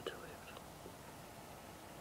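A couple of softly spoken words right at the start, then a steady, faint hiss of room tone.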